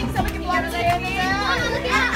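A crowd of children's voices, many talking and calling out over one another.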